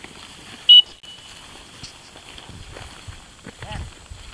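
A single short, sharp blast on a dog-training whistle about a second in, the loudest sound here: the one-toot signal a retriever handler uses to stop the dog and make it sit.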